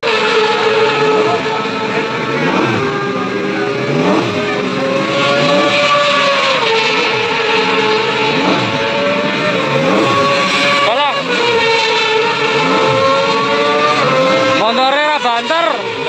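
Several racing motorcycle engines running at high revs. Their pitch rises and falls repeatedly as they accelerate, shift and pass, with quick up-and-down rev sweeps about eleven seconds in and again near the end.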